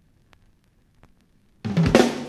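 Vinyl LP run-in groove: faint surface noise with a few soft clicks, then a little over a second and a half in the band starts loud with drum kit hits and bass.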